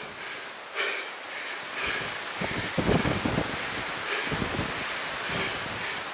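Wind buffeting the microphone over a rustle of long grass, with louder gusts a few seconds in.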